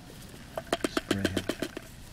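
A quick run of about ten sharp clicks, roughly eight a second, as a buried sprinkler spray head is twisted loose by hand, with a short low hum of a man's voice among them.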